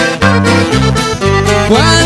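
Norteño band playing an instrumental passage: button accordion over guitar and electric bass, with a steady bouncing bass line. Near the end some pitches slide upward.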